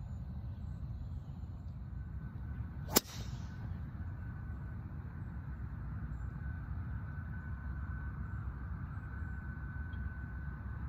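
A golf driver striking a ball off the tee: one sharp crack about three seconds in, over a steady low background rumble.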